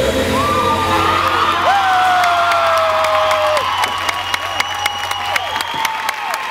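The routine's music ends about two seconds in while the audience cheers with long high whoops, and clapping builds over the last couple of seconds.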